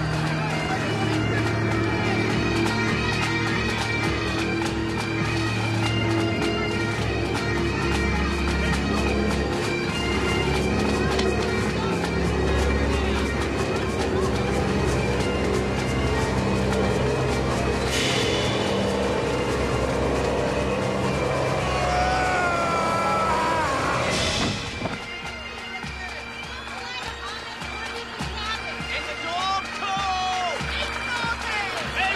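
Dramatic background music: a dense, droning score of held notes. Two sudden crashes come about eighteen and twenty-four seconds in, and after the second the sound drops quieter.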